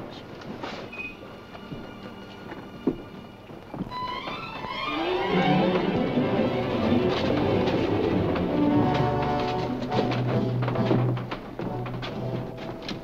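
Orchestral film score, quiet for the first few seconds, then swelling louder and fuller about four seconds in.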